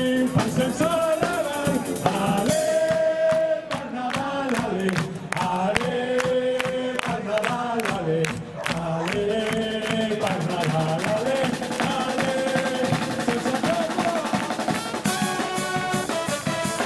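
Xaranga brass band playing live: saxophones, trombones and trumpet carry the melody over a steady beat of snare and bass drum.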